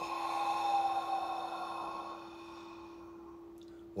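A man's long, audible exhale through the open mouth, a sigh-like release after a guided deep inhale in a breathing exercise, loudest early and fading away over about two and a half seconds. A steady low tone hums underneath.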